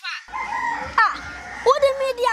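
A rooster crowing: high, drawn-out calls, the last one held and falling away at its end.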